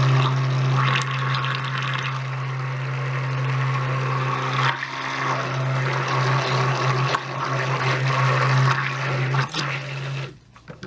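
Handheld stick blender running in a plastic beaker of thick cold process soap batter: a steady motor hum over the churning of the batter, dipping briefly a little before halfway. It is blending out ricing, small grainy lumps, in white batter that has thickened fast.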